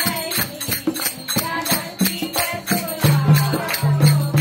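Devotional singing over a quick, steady percussion beat with a jingling, tambourine-like sound.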